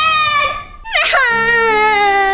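A young girl crying loudly: a short cry, then from about a second in a long wail that falls in pitch.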